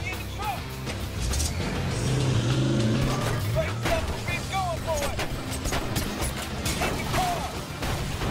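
Film action-scene sound mix: a heavy vehicle engine revving up under a dramatic music score, with repeated sharp hits and short shouted calls.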